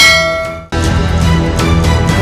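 Logo sting sound effect: a bright metallic chime struck once and left ringing. Under a second later comes a second, heavier hit with a deep bass swell.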